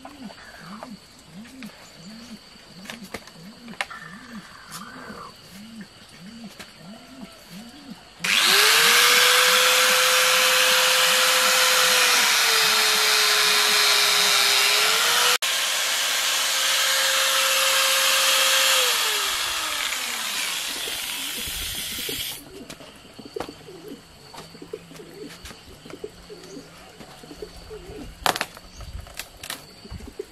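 A corded electric power tool starts about eight seconds in and cuts into a rubber tire for some fourteen seconds. Its motor note sags under load in the middle, breaks off for a moment, then slows down near the end before the sound stops.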